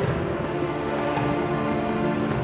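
Figure skating program music playing in the arena, with long held notes.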